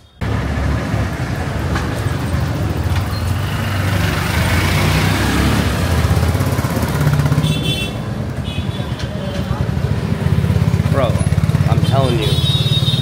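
Motor scooters and motorcycles running close by in a narrow street, a steady engine drone that grows louder near the end.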